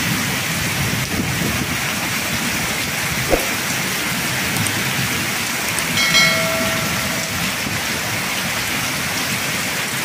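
Heavy tropical downpour in strong wind, rain beating steadily on foliage and the roof with water streaming off the eave. A short knock sounds about three seconds in, and a brief steady tone about six seconds in.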